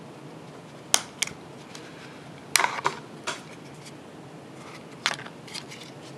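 Plastic clicks and snaps of a Yaesu VX-8DR handheld radio's battery pack being unlatched and taken off: two sharp clicks about a second in, a quick cluster of clicks midway, and one more click near the end.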